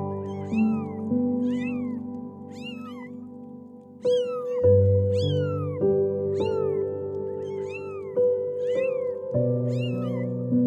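Kittens meowing again and again, short high-pitched calls that rise and fall in pitch, about one a second, over background music with sustained notes.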